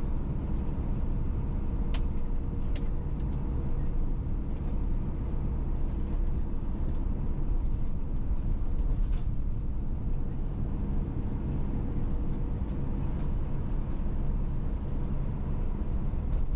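Steady low rumble of a car's engine and tyres on the road, heard from inside the moving car, with a faint constant hum. A few brief faint clicks come at about two, three and nine seconds in.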